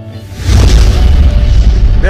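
Cinematic explosion sound effect: a deep, loud boom that swells about half a second in and rumbles on.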